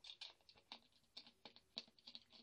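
Plastic screw cap being twisted on a Belyi Medved beer bottle, giving a quick, irregular run of faint clicks.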